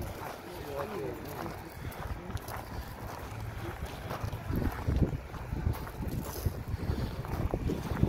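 Wind buffeting a phone's microphone as a low, gusty rumble that swells strongest about halfway through.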